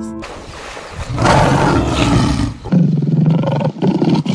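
Lion roaring: a long, loud roar starting about a second in, then a shorter, lower-pitched one near the end.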